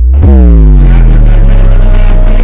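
Loud engine-like transition sound effect: a pitched tone that falls sharply in pitch over about the first second and then holds low, over deep bass and background music.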